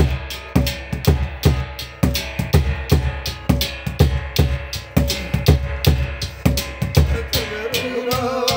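Large rope-laced drum beaten with a stick together with large hand-held metal cymbals clashing, keeping a fast, even beat.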